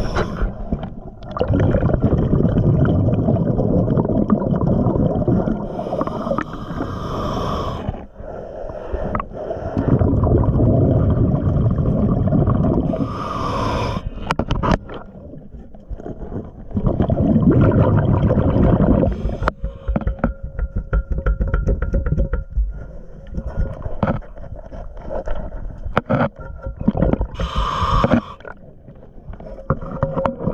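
Underwater sound of a diver breathing through a scuba regulator: long low bubbling exhalations alternate with short hissing inhalations, about three breaths in all. Scattered clicks and scrapes come through, mostly in the last third.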